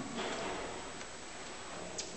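Steady room noise with a few soft ticks, about a second apart.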